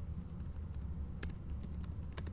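Typing on a computer keyboard: a quick run of separate key clicks over a steady low hum.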